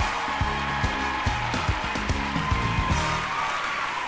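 Band play-on music with a bass and drum beat and a held high note over it. The beat stops near the end.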